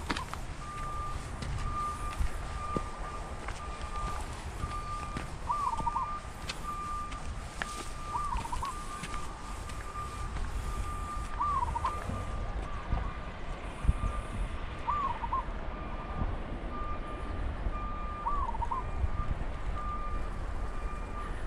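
A bird repeating a short, looping call about every three seconds over a steady, broken high tone, with a hiker's footsteps and low rumble beneath.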